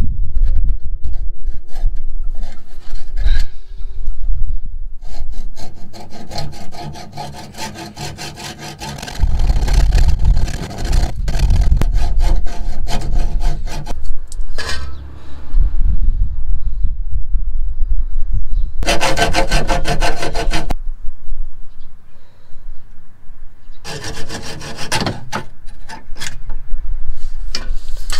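Large hacksaw cutting through a metal coolant pipe. The strokes come in spells: a long run through the middle, then two short bursts after a pause.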